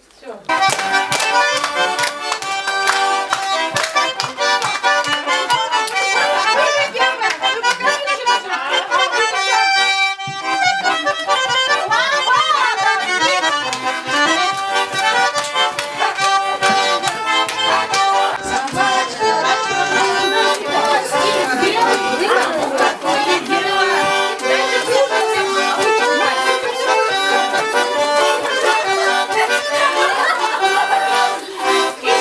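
Accordion playing a Russian folk dance tune, with hand clapping in time.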